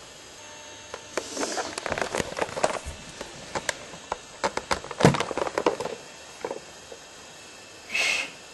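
A run of irregular light clicks and knocks, thickest from about a second in to about five seconds, then thinning out.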